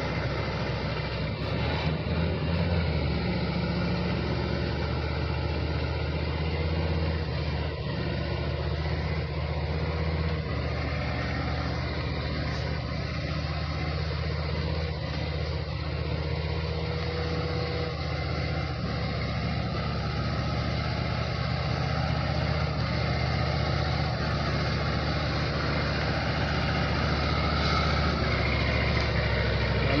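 A truck engine running steadily: a low, even hum under a broad hiss, with no change in pitch.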